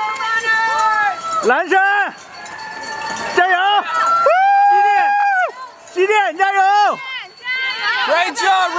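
Spectators yelling long, high-pitched cheers to urge on passing marathon runners, one drawn-out shout after another, the longest held for about a second.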